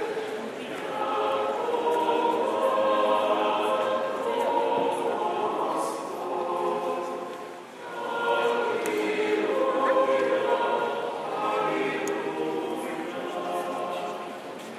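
A choir singing an Orthodox church chant in long, held phrases, with a short break between phrases a little past halfway.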